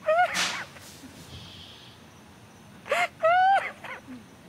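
A woman crying: two high, wavering wails, one at the start and another about three seconds in.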